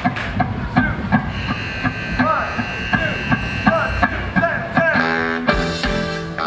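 A live student rock band starting to play: a steady drum beat about three hits a second under bending pitched notes, then a full held chord comes in about five seconds in.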